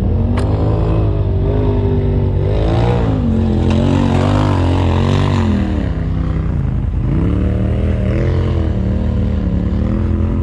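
Turbocharged Polaris RZR side-by-side engine, heard from the cockpit, revving up and down as it drives across a dirt hillside. The revs climb about three seconds in, drop briefly about seven seconds in, then rise again.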